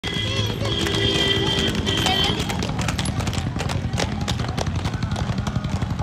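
Small plastic wheels of children's quad roller skates rattling and rumbling over rough asphalt, with a few sustained musical tones over it in the first couple of seconds.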